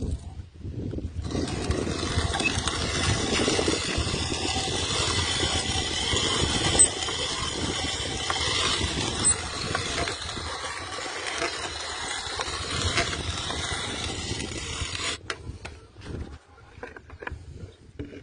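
Hand-cranked cast-iron mill grinding freshly roasted coffee beans: a dense, steady crunching that starts about a second in and stops suddenly about three seconds before the end, followed by a few scattered clicks.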